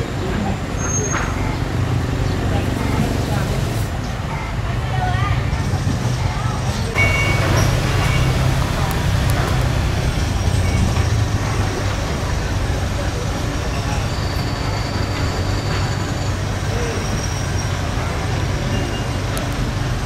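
Heavy diesel machinery running steadily: the engine of a truck-mounted crane hoisting a steel bridge beam, with a Doosan DX55 mini excavator nearby, a constant low hum that grows a little louder about seven seconds in.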